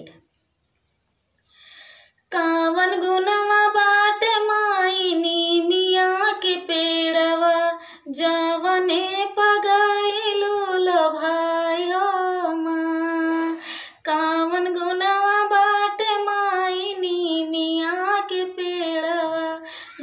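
A woman singing a Dehati pachra, a village devotional folk song to the mother goddess, solo and unaccompanied, in long held, wavering melodic lines. She begins about two seconds in after a brief hush, with short breath breaks about eight and fourteen seconds in.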